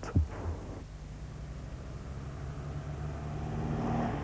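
Sunbeam convertible sports car's engine running as the car approaches, a steady low hum growing gradually louder.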